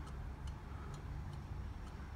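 A few faint, light metallic ticks as an intake valve is rocked side to side in its guide in a small-block Chevy LT1 cylinder head, its head pushing against a dial indicator's plunger. The guide is worn: about seven thousandths of total play, roughly three and a half thousandths of clearance, too loose for an intake guide.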